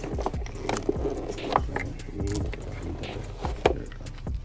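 Hard plastic packaging and clipper accessories being handled: a scattered series of sharp clicks and knocks as parts are lifted out of a box insert and turned in the hands.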